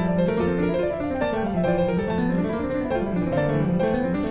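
Background piano music: a steady flow of held and moving notes.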